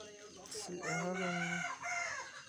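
A loud, drawn-out animal call with a steady pitch, lasting about a second from roughly a third of the way in, followed by a shorter call near the end.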